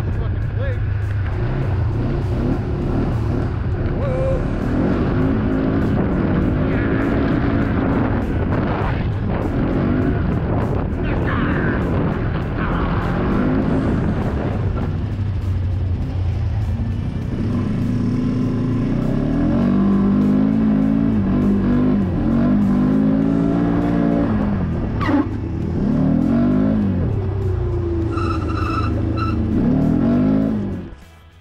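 ATV engine running under load on a dirt trail, revving up and falling back again and again as the throttle is worked, over a steady low rumble.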